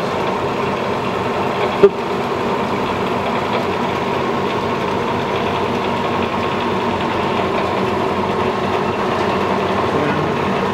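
Motorized power feed of a Bridgeport Series II vertical mill running, driving the knee down with a steady mechanical hum and whine. There is one sharp clack about two seconds in.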